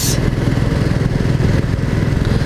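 Royal Enfield Classic 350's single-cylinder engine running steadily at cruising speed, heard from the rider's seat as a rapid, even run of low firing pulses, with wind noise on the microphone.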